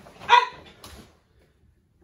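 A karate kiai: a short, sharp barked shout from a woman as she throws a side thrust kick, followed a little under a second in by a brief sharp snap.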